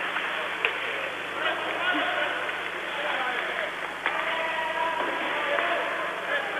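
Ice hockey arena crowd noise, a steady murmur of voices, with a few faint clicks of sticks on the puck as play goes on. The sound is thin and muffled, as on an old band-limited TV broadcast.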